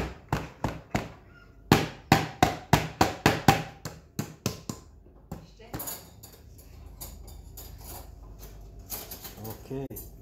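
Repeated knocking on the bottom of an upturned metal cooking pot: a quick run of sharp knocks, about three or four a second, then fainter scattered taps and rustling from about five seconds in. The pot is being knocked to loosen the maqluba, which was said to be stuck fast, before the pot is lifted off.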